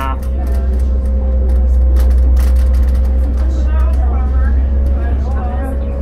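Cabin noise of a 2006 New Flyer D40LF diesel city bus, heard from inside: a steady low engine drone with a constant hum, and a few brief clicks or rattles.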